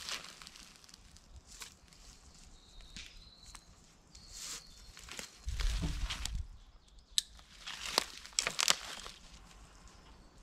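Rope being wrapped and knotted around a tree trunk: rustling and rubbing of the rope against bark and clothing, with scattered small clicks and a low rumble about halfway through.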